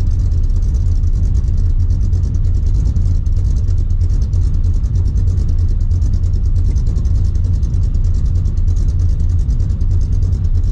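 Steady low drone of a Ford car's engine and road noise, heard from inside the cabin while it drives at an even speed.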